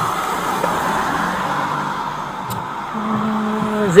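Steady rushing vehicle noise, with a low hum of a voice in the last second.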